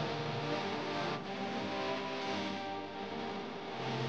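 Background music: a slow song with long held notes.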